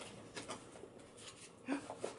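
Faint handling noises of a small cardboard box being opened by hand: a few light scrapes and taps of the flaps. Near the end, a short 'ooh' from a woman.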